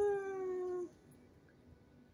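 A young child's single drawn-out vocal note, held steady and sliding slightly down in pitch, cutting off just under a second in.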